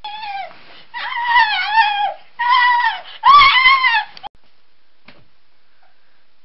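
High-pitched creature cries for the eel monster: four wavering squeals in quick succession, each sliding down in pitch at its end, growing louder, the last the loudest. A faint click follows about a second after they stop.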